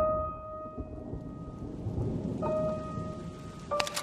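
Low rumble of thunder with rain, under a single high sustained note that sounds three times: at the start, about two and a half seconds in, and near the end, where a sharp click comes with it.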